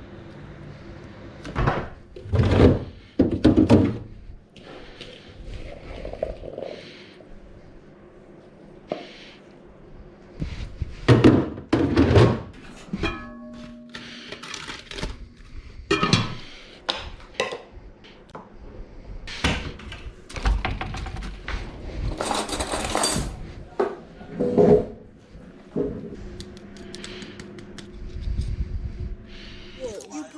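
Irregular thunks and clatters of plates, cutlery and food being handled and set down on a table, with several louder knocks.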